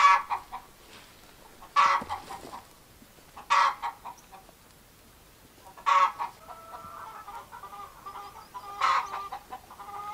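Chickens calling: a loud squawk about every two seconds, five in all, with softer, quicker clucking in between during the second half.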